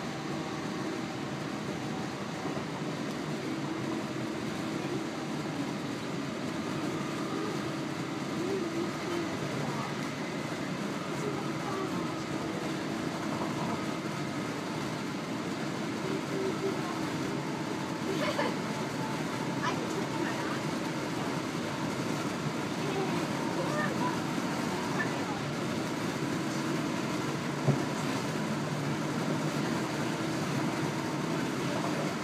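Interior of a Class 323 electric multiple unit running at speed: steady rumble of wheels on rail with a constant electric hum, and a single sharp knock near the end.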